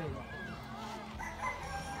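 A rooster crowing, with voices of onlookers faintly around it.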